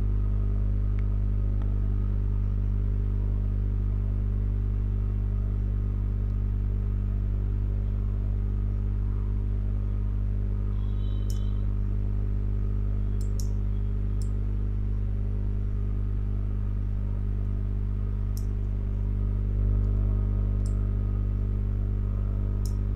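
Steady electrical hum from the recording setup, a stack of evenly spaced low tones, with a few faint clicks scattered through the second half.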